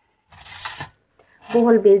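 A brief dry rustling scrape, about half a second long, from a dried sponge gourd (luffa) being handled.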